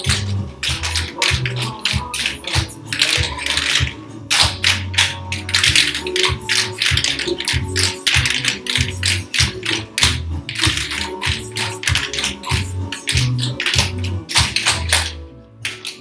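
Several dancers' tap shoes clicking on the studio floor in quick, irregular strokes over recorded music with a steady bass beat. The music and tapping stop just before the end.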